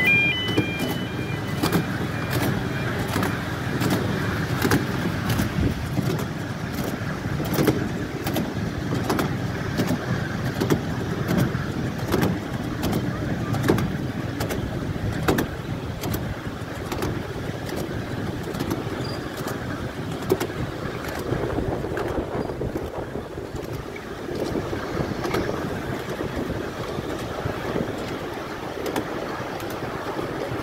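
Miniature-gauge train running along its track, heard from on board a riding car: a steady rumble of wheels on rail with frequent short clicks over the rail joints.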